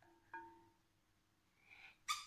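Near silence, broken about a third of a second in by one faint tap with a short ring: wooden toy train track knocking against a glass bowl of water.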